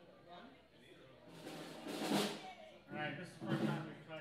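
Voices talking between songs, with a short, loud, noisy burst about two seconds in, such as a cymbal hit or a shout.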